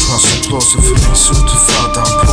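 Hip hop music: a beat with heavy bass, kick drum and hi-hats under held synth tones, with rapping over it.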